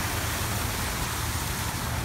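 Steady rushing noise of road traffic passing on a multi-lane road, with a low rumble and no distinct events.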